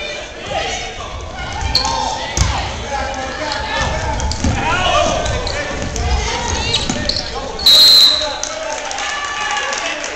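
Basketball game in an echoing gym: a ball being dribbled on a hardwood floor under shouting from players and spectators. A short, shrill referee's whistle blast comes about eight seconds in and is the loudest sound.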